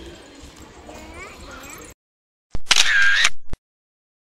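A camera shutter sound effect, a loud click that opens and closes about a second apart, comes in after a sudden cut to silence a little past halfway. Before the cut there is faint outdoor background with distant voices.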